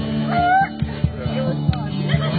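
Live band playing a 70s hit, with steady bass notes under regular drum hits and a short high sliding note about half a second in.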